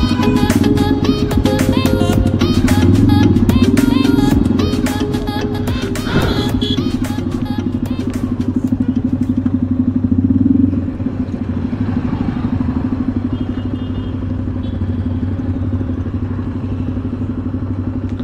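Background music with a beat fades out over the first several seconds, leaving a motorcycle engine running steadily under way. Its note swells around ten seconds in, then drops back.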